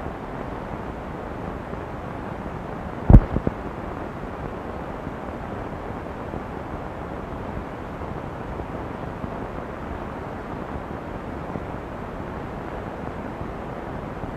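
Steady background noise with no voice, broken once about three seconds in by a single sharp thump.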